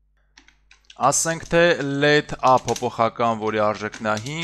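Typing on a computer keyboard: a few faint key clicks in the first second, then mostly under a man talking from about a second in.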